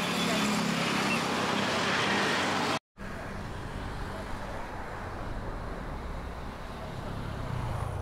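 Road traffic noise. A vehicle goes by for the first few seconds with a loud, even rush of sound, then after an abrupt cut there is a quieter, steady low rumble of traffic.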